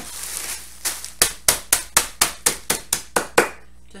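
A wooden rolling pin whacking graham crackers in a ziplock plastic bag to crush them into crumbs: about a dozen sharp, even blows at roughly four a second, starting about a second in after a short rustle of the bag and stopping shortly before the end.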